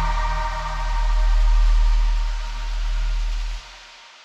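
Live electronic music coming to the end of a song, played from a laptop and pad controller: a deep bass swells and falls under held mid-range tones. Near the end the bass cuts off suddenly, leaving a fading tail.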